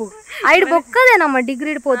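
A woman's voice talking over a steady, high-pitched chirring of insects.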